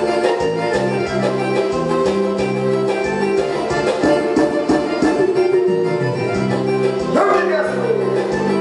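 Instrumental music played on an electronic keyboard: a sustained melody over a changing bass line and a steady beat.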